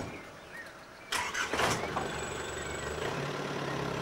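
Pickup truck engine cranked and catching about a second in, then idling steadily.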